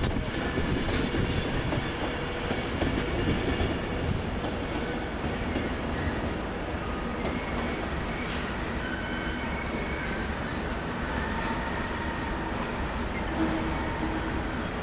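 Class 37 diesel locomotive with its English Electric engine running steadily as it approaches slowly round a curve.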